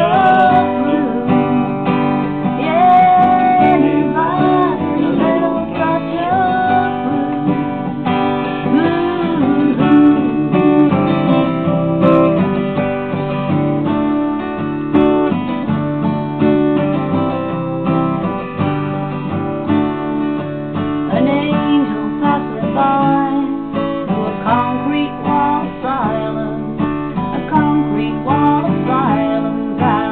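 Acoustic guitar strummed steadily, with a woman singing over it.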